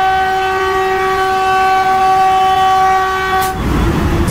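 Train 18 (Vande Bharat Express) trainset's horn sounding one long steady blast, cutting off about three and a half seconds in. The train is then heard running at speed as a rumble.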